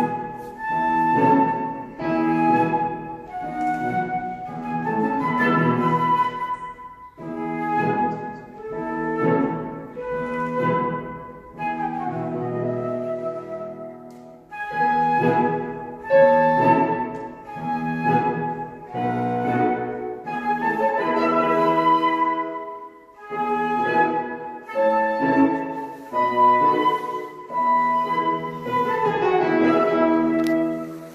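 Concert flute playing a melody of held and moving notes with piano accompaniment, in phrases broken by short pauses for breath.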